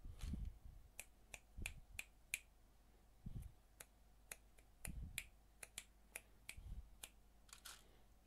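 Plastic Lego Technic pieces clicking and rattling as a hand rummages through plastic parts trays for a piece: a string of faint, sharp, irregular clicks with a few soft thumps.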